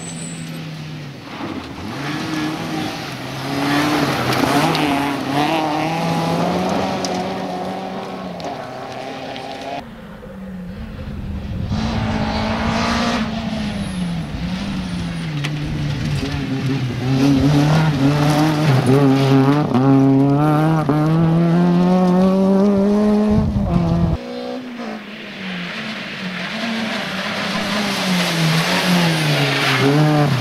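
Rally car engines revving hard as the cars drive through at speed, a Peugeot 206 among them. The pitch climbs through the gears, dropping briefly at each shift. The sound breaks off abruptly about 24 seconds in, and another pass follows with the engine falling and then climbing again.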